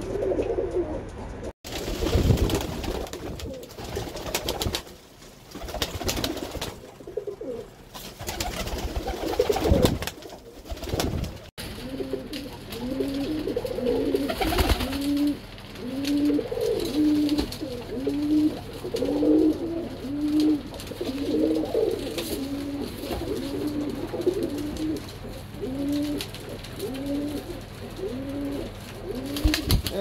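Birmingham Roller pigeons cooing, a steady run of repeated low coos, about one or two a second, through the second half and more. In the first third, loud irregular rustling and scuffling noises.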